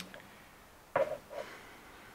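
Quiet room tone with a brief two-part voice sound about a second in, like a short hesitation murmur.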